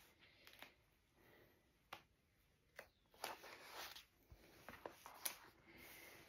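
Near silence with faint rustling and a few light taps, as the felt blankets and paper are lifted off the bed of an etching press after a printing pass.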